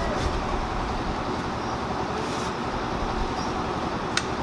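Fresh milk poured in a steady stream from a steel bucket into a steel measuring jug, a continuous rushing splash as the jug fills to the brim.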